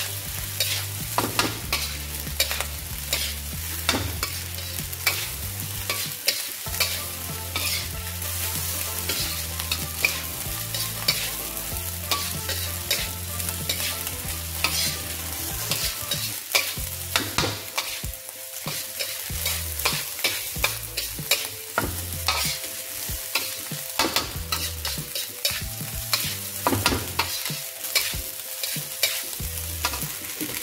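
Fried rice sizzling in a dark steel wok while a metal wok spatula stirs and tosses it, scraping and clacking against the pan many times. A low hum sits under it for the first half.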